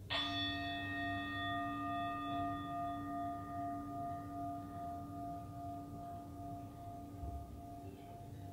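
A singing bowl struck once, ringing with a long fade: the higher tones die away within a few seconds, while the low tones ring on with a slow pulsing waver. It is the bell that closes the silent period of a guided meditation.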